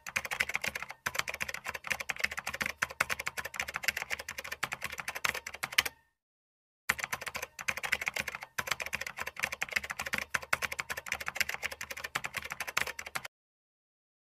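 Typing sound effect of rapid, dense key clicks, in two runs of about six seconds each with a pause of about a second between them. It stops shortly before the end.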